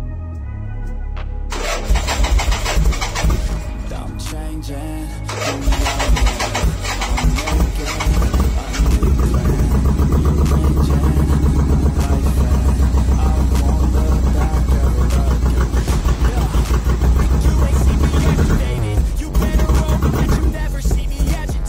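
Harley-Davidson Ironhead Sportster 1000 cc V-twin engine being started, then running at a steady idle with a rapid, even beat from about eight seconds in, under background music.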